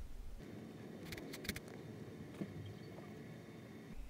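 Faint, steady background hum with a few soft, brief clicks.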